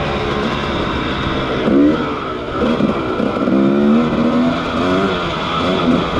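Dirt bike engine revving up and down with the throttle, its pitch climbing and dropping several times and held for about a second near the middle.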